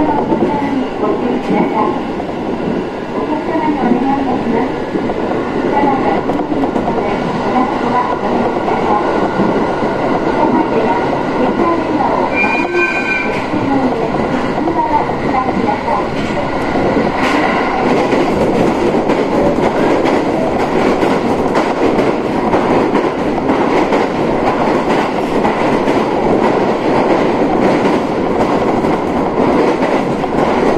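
JR 701 series electric train heard from inside the passenger car while running: steady wheel-on-rail noise with a rhythmic clatter over the rail joints. A short high tone sounds about twelve seconds in.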